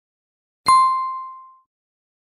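A single bright ding from a notification-bell sound effect, marking the click on the bell icon of a subscribe animation. It strikes about two-thirds of a second in, then rings and fades away within about a second.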